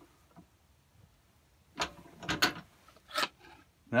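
A few sharp clicks and knocks, starting about halfway in, as a wooden pen-press board and small metal pen parts are handled and set down on a drill press's metal table.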